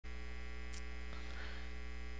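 Steady electrical mains hum: a constant low buzz with a ladder of evenly spaced overtones and no change in pitch or level.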